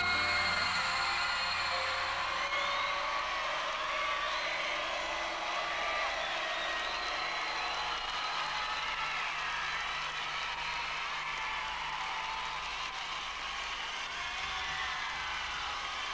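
Large audience cheering and applauding as the song's last chord dies away in the first second or two. Many high screams and whoops wave above the clapping, which slowly eases off.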